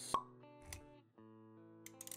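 Sound design for an animated intro: a sharp pop just after the start over soft music with guitar-like tones, then a softer knock about three quarters of a second in.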